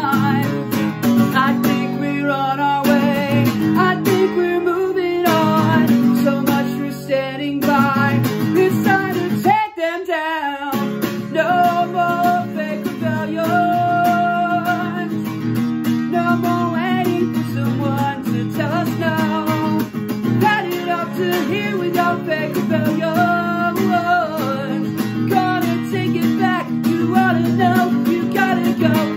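Acoustic guitar strummed steadily, capoed up the neck, with a man singing over it. The guitar drops out for about a second near ten seconds in, then comes back in.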